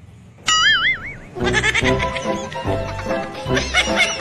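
A goat-like bleat, one quavering 'baa' with a wobbling pitch lasting under a second, dropped in as a comic sound effect. About a second and a half in, background music with a steady beat starts and carries on.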